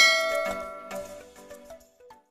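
A bright bell-like ding, the notification-bell sound effect of an animated subscribe end screen, struck once at the start and ringing out as it fades, with a few softer notes after it.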